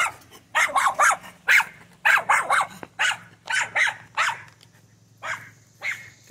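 A dog barking repeatedly, about a dozen short barks in quick clusters of two or three.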